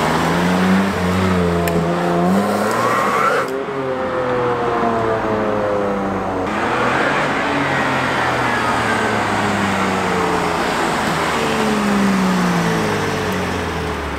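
BMW M2 Competition's twin-turbo straight-six running through an aftermarket PCW exhaust with its valves coded shut and burbles off. The engine note rises as the car accelerates away. After two abrupt changes in the sound, further drive-bys follow, with the note falling and rising again.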